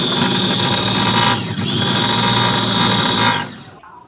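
Electric food chopper with a glass bowl and stainless motor head running at high speed, grinding ginger, sugar and chilli into a paste. The motor whine dips and spins back up about a second and a half in, then winds down and stops near the end.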